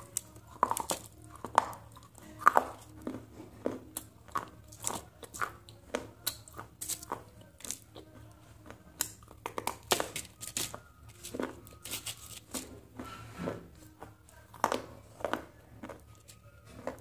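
Close-miked chewing and biting of Maggi noodles with red chutney: irregular wet clicks, smacks and crunches, a few a second.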